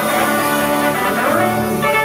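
Live band playing, with tenor saxophone and trombone over electric guitar, bass guitar, keyboard and drums. A note slides in pitch about halfway through.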